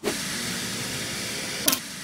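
Static-like hiss, an editing sound effect laid under a glitch transition, with a short sharp blip near the end, after which the hiss carries on quieter.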